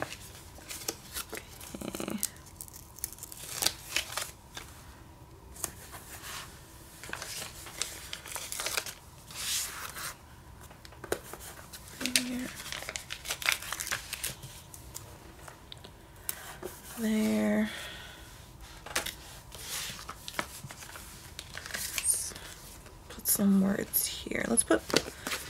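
Sticker sheets and paper rustling and crinkling as stickers are peeled from their backing and pressed onto notebook pages, with scattered light taps and clicks. A brief hum from a voice about two-thirds of the way through.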